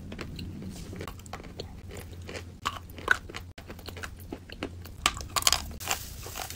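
Close-miked biting and chewing of chunks of dry chalk: a run of sharp crunches and grinding, with one loud crunch about three seconds in and a quick cluster of louder crunches near the end.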